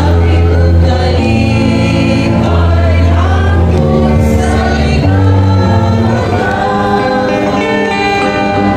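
A choir singing a slow hymn over instrumental accompaniment, with held bass notes that change every second or two.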